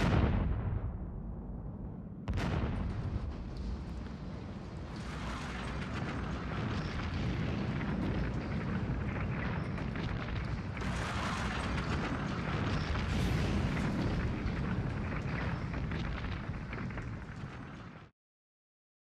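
Two sharp blasts about two seconds apart from RDX shaped charges cutting the steel columns of a rocket service tower in a controlled demolition. Then a long, continuous rumble as the steel tower collapses, cut off suddenly at the end.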